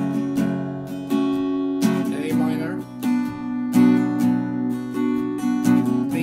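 Steel-string acoustic guitar, capoed at the second fret, strummed through the open chords of the verse, starting on an E minor shape, with several chord changes.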